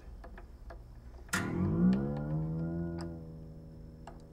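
Light clicks from a string crank turning an acoustic guitar's tuning machine. About a second in, the new steel string rings out, its pitch gliding upward as it is wound tighter, then levelling off and fading.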